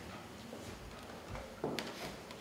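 Footsteps on a stage floor, a few irregular thuds, with a sharper click near the end.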